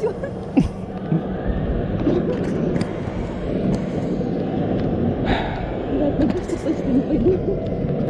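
Faint voices over a steady low rumbling noise, with one sharp click a little over half a second in.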